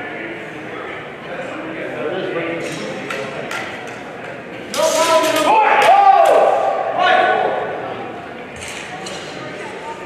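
Steel longswords clashing in a fencing bout: a few sharp metallic clicks, then a harder clash about five seconds in, followed at once by a loud, drawn-out shout that bends in pitch, over the chatter of voices in a large hall.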